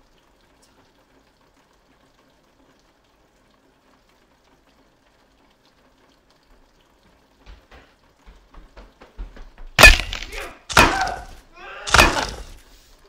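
A fight: a long hush, then scuffling knocks and a series of loud, sharp thuds and crashes about a second apart near the end, as bodies and blows hit the floor and furniture.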